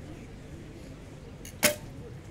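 Recurve bow shot: the bowstring is released with one sharp snap about one and a half seconds in, preceded by a faint tick.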